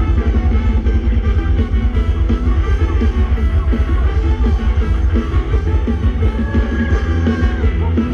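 Live band playing loud ramwong dance music with a heavy, driving bass beat.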